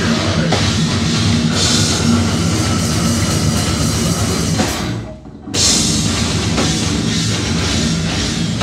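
Live heavy metal band playing loud, with distorted electric guitars, bass and drum kit. About five seconds in the band stops dead for half a second, then comes back in.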